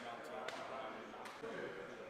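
Indistinct voices talking in a gym, with two sharp knocks, about half a second and a second and a quarter in.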